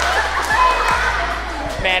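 A group of girls' voices cheering and laughing together, with a few dull thumps underneath.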